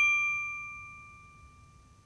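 A single bright bell ding, struck just before and ringing out with a clear tone that fades away over about a second and a half.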